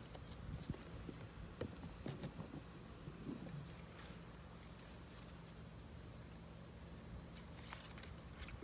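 Light rustling and brushing of leaves and branches, with a few soft clicks in the first few seconds, over a steady high-pitched hiss and a low hum of outdoor background.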